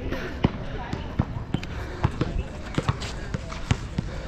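A basketball bouncing on a hard outdoor court: a string of sharp, irregular thuds, roughly two a second.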